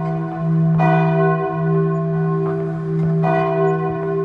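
A deep bell tolling, struck about a second in and again a little after three seconds, ringing on steadily between strikes.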